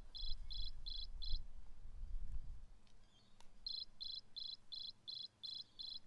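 Recorded cricket chirping from the sound chip in the last page of The Very Quiet Cricket: even, high chirps about three a second, stopping about a second and a half in, then starting again after a gap of about two seconds.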